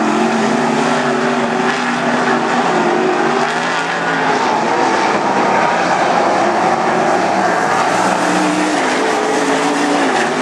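Wingless sprint cars racing on a dirt oval, their V8 engines running loud and steady at high revs. The engine pitch wavers up and down as the cars go through the turns.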